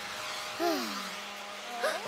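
A cartoon hair dryer blowing with a steady whoosh, under a few soft held notes. A short falling vocal murmur from a character comes about half a second in.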